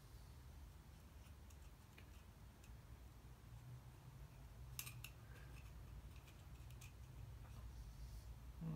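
Faint light clicks of steel piston rings being rolled around their grooves by hand on an 85 mm piston as their gaps are clocked, with a short cluster of clicks about five seconds in, over a low steady hum.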